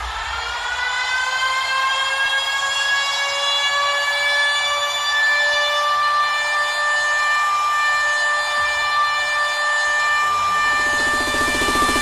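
Electronic music in a beatless break: one long held synth note with a stack of overtones that slides slightly up in pitch over the first couple of seconds and then holds steady. A faint pulse creeps in near the end.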